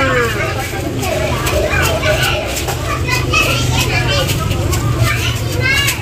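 Several people talking at once, some of them high-pitched voices like children's, over a steady low hum.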